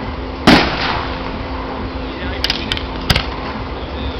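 Aerial firework shells bursting: one loud bang about half a second in, then a few smaller cracks around two and a half seconds and a sharp crack near three seconds.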